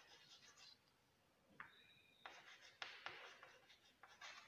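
Chalk scratching on a chalkboard in a run of short, faint strokes as words are written, with a brief high squeak about halfway through.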